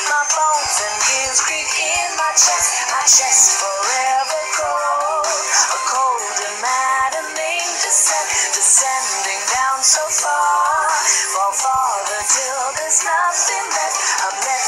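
A song with a sung vocal over instrumental backing, the lyrics running "My bones and gears creak in my chest" and "Descending down so far".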